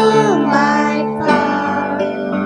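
Children singing a song with instrumental accompaniment, a guitar among it.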